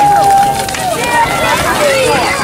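Voices of a group of people outdoors: one long drawn-out shout in the first second, then overlapping shouting and laughter.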